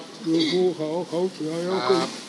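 Speech: an old man talking in Thai, his voice wavering in pitch.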